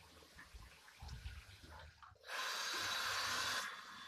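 Water running for about a second and a half, a steady hiss that starts abruptly just past the middle and cuts off suddenly. Faint low rumbling comes before it.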